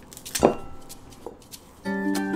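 A ripe banana snapped open at the stem, one short crack about half a second in followed by faint crackling as the peel is pulled. Plucked-guitar background music starts just before the end.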